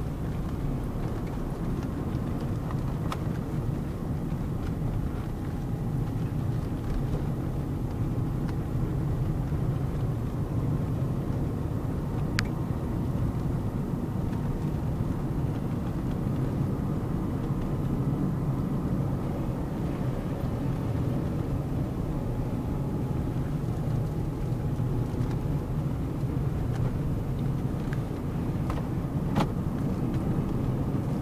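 Car being driven, heard from inside the cabin: a steady low rumble of engine and tyres on the road. A few faint, sharp clicks stand out briefly, one early, one near the middle and one near the end.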